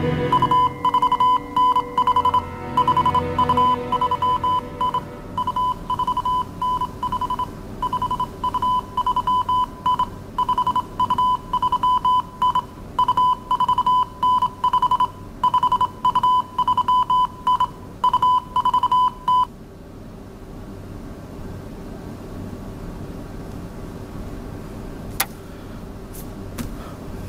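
Morse code on a radio set: a single high beep keyed on and off in short and long pulses, spelling out an incoming telegram. It stops abruptly about 19 seconds in, leaving a low steady hum and one sharp click near the end.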